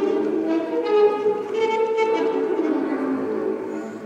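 Bowed double bass and alto saxophone improvising together in long, overlapping held notes that shift pitch slowly, with a new note entering about a second in and another about two seconds in.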